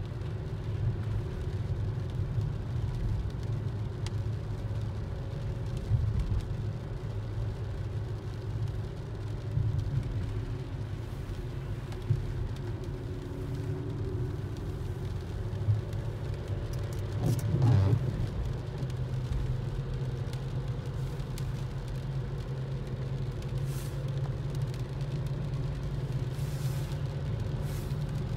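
Steady low rumble of a car driving, heard from inside the cabin, with a brief louder swell about eighteen seconds in.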